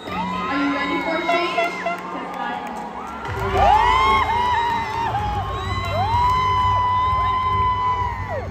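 Audience cheering and screaming, many high-pitched shouts and whoops overlapping, with a low steady sound coming in about three seconds in.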